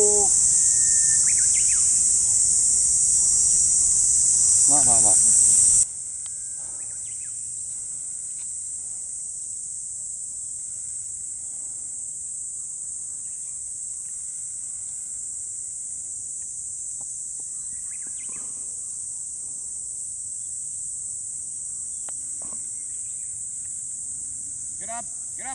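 Steady, high-pitched drone of cicadas that runs throughout. It drops sharply in level about six seconds in, then carries on more quietly. A few brief voices break in here and there.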